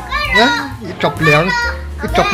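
A girl's voice talking loudly in a high pitch, in short bursts.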